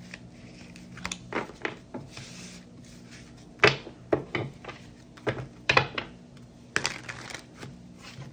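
Tarot cards being swept up off a wooden desktop and knocked together into a deck: a dozen or so short taps and slaps at uneven intervals, the loudest about halfway through, over a faint steady hum.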